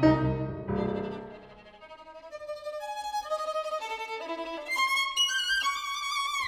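Violin and piano duo: a low piano sonority dies away, then the violin alone plays slow single notes that climb step by step to a high held note with vibrato.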